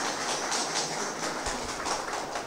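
Audience applauding: many hands clapping at once in a steady patter.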